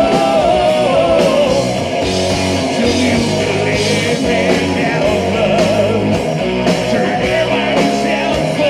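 A heavy metal band playing live at full volume, with bass, drums and guitar, and a male singer's held, wavering notes over the band.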